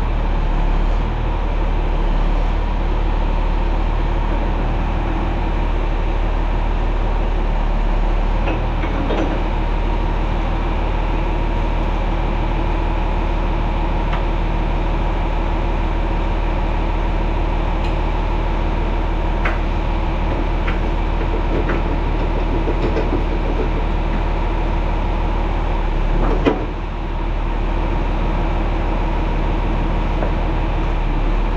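John Deere 4640 tractor's six-cylinder diesel engine idling steadily, with a few sharp metallic clicks as the planter's hydraulic hose couplers are handled, the loudest near the end.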